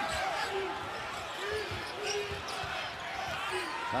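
Arena crowd noise, with a basketball dribbled on the hardwood court making scattered low thuds.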